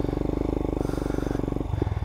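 Royal Enfield Himalayan's 411 cc single-cylinder engine running at low speed through a slow full-lock U-turn, a steady, even pulse that eases off about a second and a half in.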